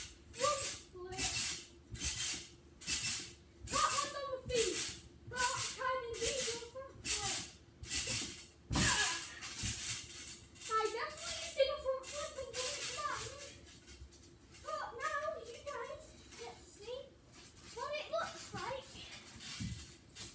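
Trampoline bouncing: a short rush of mat-and-spring noise on each bounce, at an even pace of a little over one a second. About nine seconds in comes one heavier landing, and the bouncing stops.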